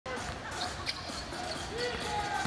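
Live basketball game court sound: a steady crowd murmur with a few short, sharp squeaks and knocks of sneakers and ball on the hardwood floor.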